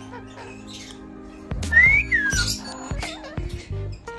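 A parrot gives one short whistle, rising then falling in pitch, about halfway through, with a few low knocks around it. Steady background music runs underneath.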